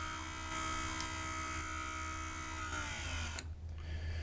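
Truth Hardware Sentry II operator motor running steadily as it drives the skylight or window closed during a soft reset, then winding down in pitch and stopping about three seconds in.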